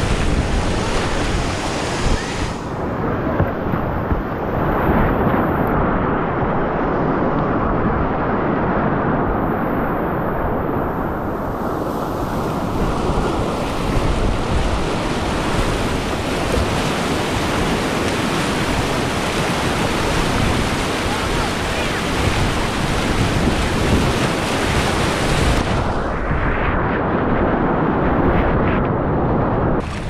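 Whitewater rushing and splashing around a kayak as it runs a rapid, heard close up from the boat, loud and steady throughout.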